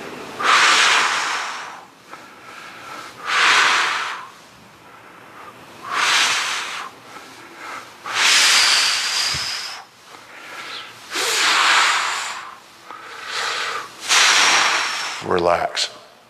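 A man breathing hard through his mouth while exerting himself in a core exercise: about seven loud, hissing breaths, one every two to three seconds.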